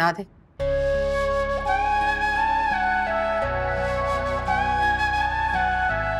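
Background score music comes in about half a second in: a slow, held melody over sustained low chords that change twice.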